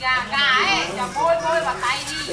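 A high-pitched voice speaking loudly, its pitch sweeping up and down.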